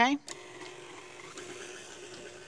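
KitchenAid Ultra Power stand mixer running steadily, its motor giving an even hum as the flat beater works sticky yeast bread dough with freshly added flour.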